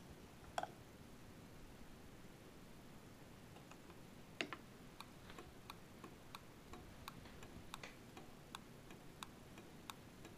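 Automotive flasher relay clicking faintly and steadily, two or three clicks a second, as it switches 12-volt power through an ignition coil in a homemade electric fence energiser. A single click about half a second in, then the steady clicking starts about four seconds in.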